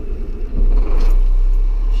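A Caterpillar 966H wheel loader's diesel engine starting, heard from inside the cab. It catches about half a second in and settles into a steady, deep running sound.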